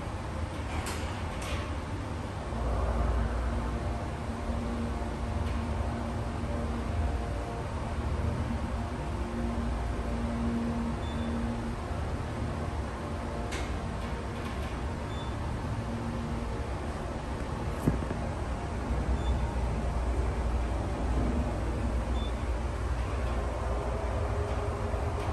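Roped hydraulic elevator car travelling upward: a steady low rumble, with a low hum coming in after about two seconds and fading out around halfway, and a few faint clicks, the sharpest about three-quarters of the way through.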